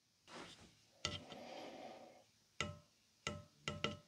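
Faint handling noise: a soft rustle about a second in, then a few short, irregularly spaced knocks with a slight wooden ring.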